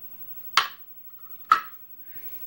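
Two sharp metallic clicks about a second apart, the second louder with a brief ring: small metal lock parts being handled and set down.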